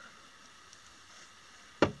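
Quiet room tone, then near the end the first sharp knock of a fly-tying hair stacker being rapped on the bench to even up the tips of a clump of deer hair, the start of a quick run of taps.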